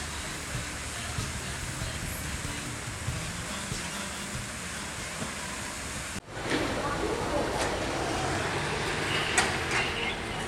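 Outdoor public-square ambience of distant voices and a murmur of people. About six seconds in it cuts off abruptly to louder city street traffic noise, with a couple of sharp clicks near the end.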